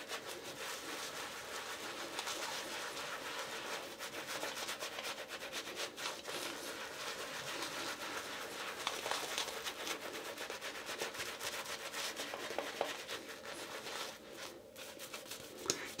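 Badger-hair shaving brush scrubbed and swirled over 36 hours of stubble, working soap lather onto the face: a continuous soft rubbing of wet bristles on whiskers, with a brief pause near the end.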